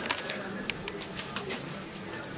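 Press-room background during a pause in speech: a low murmur with about ten sharp clicks scattered through the pause.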